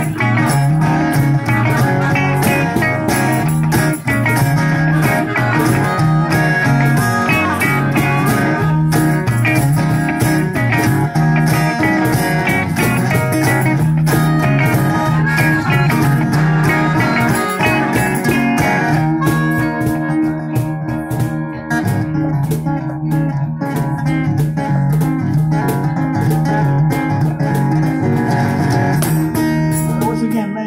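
Live blues band playing an instrumental break: harmonica and electric guitar over strummed acoustic guitar, through small amplifiers. The sound thins out a little about two-thirds of the way through.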